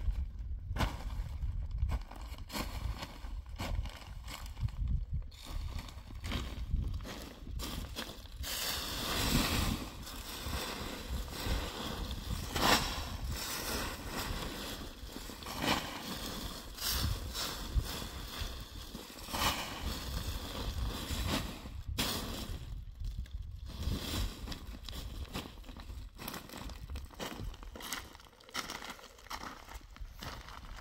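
Plastic sheeting crinkling and dry leaves rustling as they are handled, in an irregular run of crackles that is busiest through the middle.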